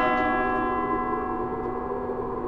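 A single stroke of a church bell, its many overtones ringing out and slowly fading, over a steady low hum.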